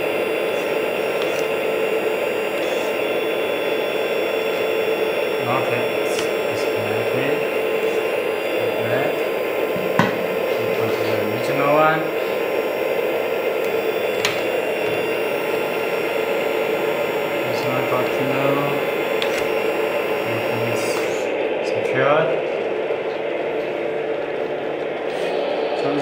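1/14 RC metal hydraulic excavator running with a steady hum, its hydraulic pump left on while the bucket attachment is refitted.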